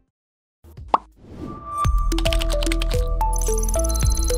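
After a brief stretch of silence, a single short pop sound effect about a second in, then a TV station's closing ident jingle starts just under two seconds in: electronic music with a heavy bass and a stepping melody.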